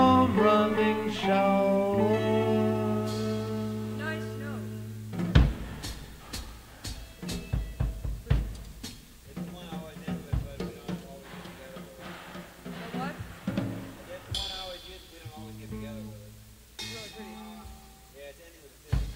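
A rock band's electric guitars and bass hold a final chord that fades over about five seconds. Then a sharp drum hit, scattered snare and drum taps, and faint voices and stray instrument notes.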